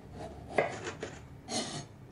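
A kitchen knife cuts the top off a strawberry on a bamboo cutting board. The blade meets the board with a sharp tap about half a second in, then a few lighter taps. Near the end the blade makes a short scrape across the wood.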